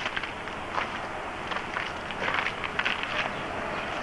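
Footsteps on asphalt, a handful of irregular scuffs and steps over steady outdoor background noise.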